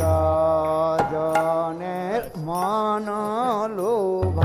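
Devotional kirtan chanting: a single voice holds a long steady note, then moves into a wavering, ornamented phrase in the second half. A couple of sharp clicks sound about a second in.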